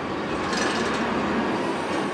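Steady mechanical rumble and hiss of a terminal tractor hauling a container trailer across a cargo ship's deck, with a faint thin whine.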